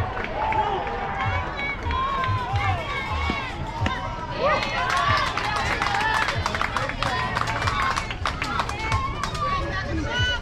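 Several high young voices calling out and chanting over one another, with a run of quick sharp taps through the second half.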